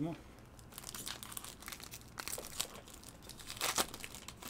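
Foil wrapper of a trading card pack crinkling as it is torn open by hand, a run of crackles with the loudest burst near the end.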